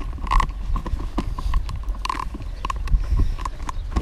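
Baby stroller rolling down a steep, rough dirt path, its wheels and frame knocking and rattling over the bumps with a continuous low rumble. Short sharp sounds recur about every half second.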